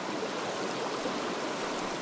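Steady rushing of floodwater, an even, unbroken wash of water noise.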